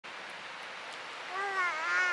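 A dog's short wavering whine starting about a second and a half in, over a steady rushing background noise.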